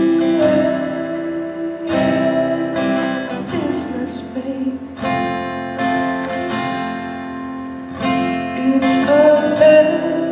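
Live acoustic guitar strummed in a slow, mellow song, with a woman singing at the microphone; fresh chords are struck every second or few.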